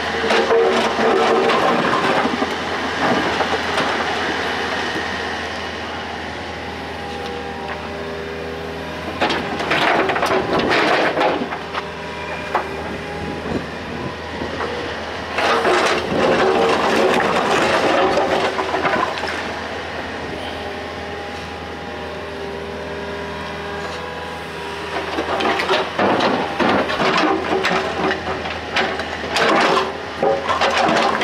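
Komatsu PC55MR mini excavator's diesel engine running steadily under load, with four bursts of clattering and scraping as the steel bucket digs into and shifts a pile of broken concrete and stone rubble.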